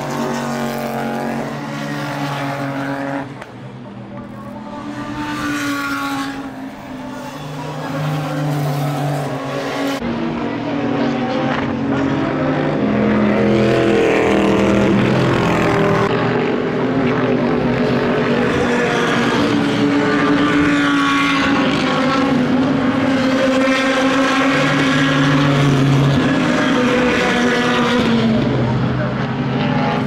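Several Super GT race cars running through a sequence of bends. Their engine notes overlap, rising and falling as the cars lift off and accelerate. About ten seconds in the sound changes abruptly and becomes louder and fuller.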